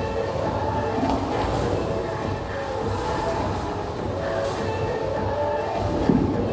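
Bowling alley din: the steady low rumble of bowling balls rolling down the lanes, with a few faint knocks.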